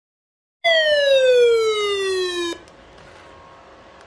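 Alert tone from a Midland NOAA weather radio: a loud, buzzy, siren-like tone that starts about half a second in, slides steadily down in pitch for about two seconds and cuts off abruptly. Afterwards a faint radio hiss with a thin steady tone underneath.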